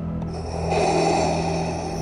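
A raspy, breath-like rush about a second long, laid over the low, sustained drone of a dark cinematic soundtrack.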